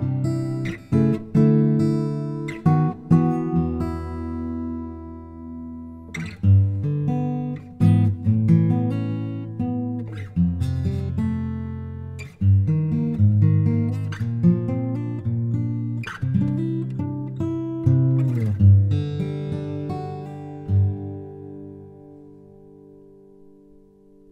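Taylor acoustic guitar strung with heavily coated D'Addario XS phosphor bronze strings, played softly fingerstyle: plucked chords with the fingers sliding along the strings, the coating keeping finger squeak on the wound strings down. The last chord rings out and fades near the end.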